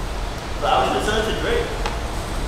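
Indistinct speech in the background for about a second, starting about half a second in, over a steady low room hum, with one small click near the end.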